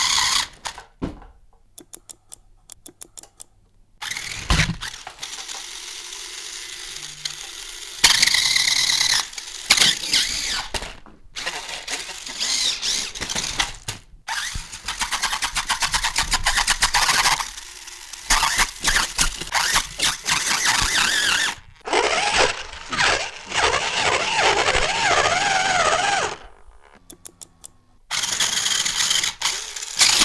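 Small electric toy motors and plastic gearboxes run on far more than their rated voltage, whirring, buzzing and clattering at high speed. The sound comes as a series of short clips with abrupt cuts and begins with a few seconds of rapid ticking.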